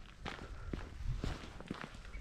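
Footsteps outdoors: a scatter of irregular short clicks and crunches.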